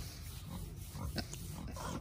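A pet pig lying in straw makes quiet, low grunting sounds while being stroked.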